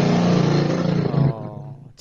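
A man's drawn-out vocal sound, held for about a second and a half and then trailing off, heard through a video-call connection.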